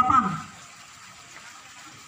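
A man's announcing voice trails off about half a second in, leaving a faint steady background hiss with no distinct events.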